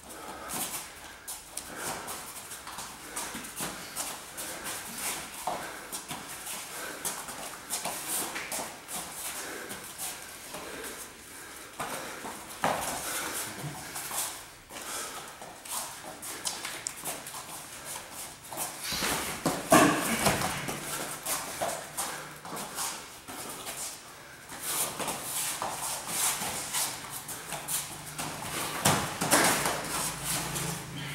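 Grappling scuffle on foam floor mats: feet shuffling and stamping irregularly, with bodies knocking together, and a louder flurry about twenty seconds in.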